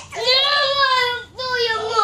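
A young child's voice in two long, high-pitched held calls, the second beginning a little past the middle, during rough play.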